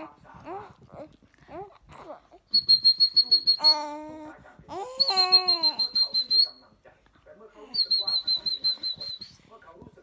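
A baby chuckling in quick rhythmic bursts, with short squealy vocal sounds, while a high steady whistle sounds three times, each note lasting a second or so.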